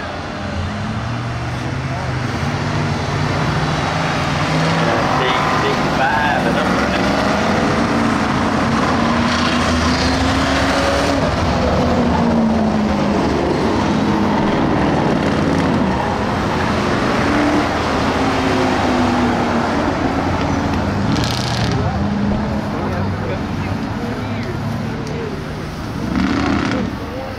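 Ford Crown Victoria race cars' V8 engines running around a dirt oval, loud and steady, their pitch rising and falling as the cars go by.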